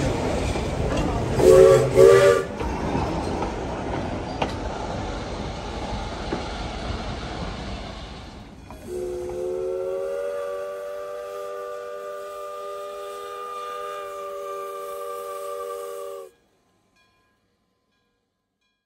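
Steam locomotive whistle: two short blasts about a second and a half in, over the noise of the train running on the rails. The train noise fades, and from about nine seconds one long, steady multi-note whistle chord sounds until it cuts off suddenly near the end.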